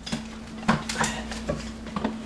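A handful of light, scattered clicks and taps of hands handling things at an outlet box in drywall, over a steady low hum.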